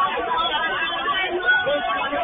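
Indistinct chatter of several people talking at once, picked up thinly through a security camera's microphone.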